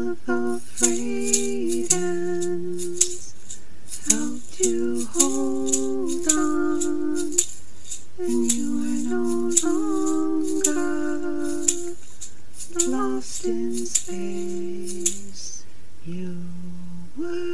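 A voice humming a slow wordless melody in held notes that step up and down, with a hand rattle shaken in short, sharp shakes between the notes.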